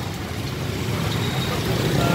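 Small motorbike and scooter engines running on a wet road, a steady rumble that grows louder as one comes closer.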